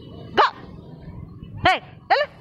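A dog barking: two short, sharp barks about a second and a quarter apart.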